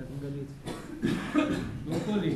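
Indistinct speech with a cough about halfway through.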